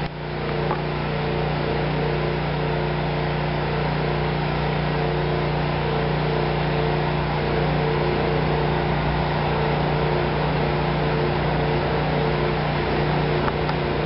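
Engine-driven generator running at a steady speed: an even, unchanging engine hum.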